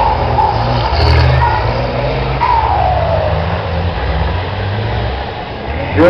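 Race truck engines running on a dirt track cross-circuit, a steady low rumble with one falling whine about halfway through.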